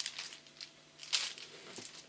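Packaging of a sheet of alphabet stickers crinkling as it is handled and set aside, in a few short rustles; the sharpest comes about a second in.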